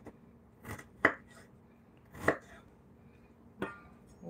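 Chef's knife chopping fresh ginger on a wooden cutting board: four or five separate knocks of the blade on the board, irregularly spaced, the second the loudest.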